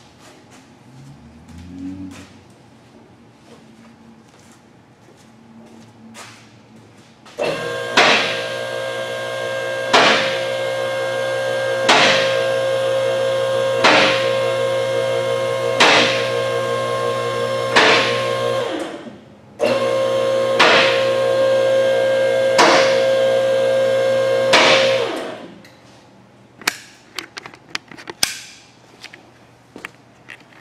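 Two-post vehicle lift's electric hydraulic pump motor running with a steady hum as it raises a truck cab, and the arm safety locks clicking about every two seconds. The motor stops briefly a little past halfway, then runs again for about five more seconds.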